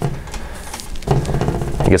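A man's voice pausing between phrases over a steady low hum, with a soft voiced sound about halfway through and speech starting again at the end.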